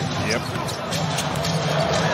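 Basketball being dribbled on a hardwood court, with a steady arena crowd noise underneath.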